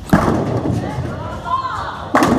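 A bowling ball lands on the wooden lane with a loud thud just after the start, then rolls with a steady rumble while voices carry across the bowling alley.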